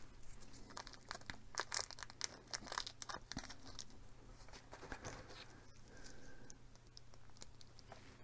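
Faint crinkling of a plastic bag with many small scattered clicks, as hands rummage for small self-tapping screws.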